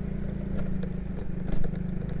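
Motorcycle engine running steadily at low speed while riding, with light clattering and one short knock about one and a half seconds in.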